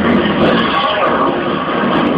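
Dance routine's soundtrack over loudspeakers, in a stretch that is a dense, steady, engine-like roar rather than a beat, mixed with voices.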